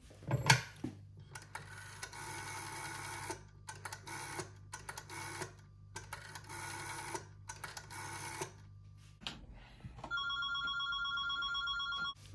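A black Ericsson rotary-dial telephone: a clack about half a second in, then the dial is turned and whirs back several times as a number is dialled. Near the end a steady, slightly warbling telephone ringing tone sounds while the call goes through.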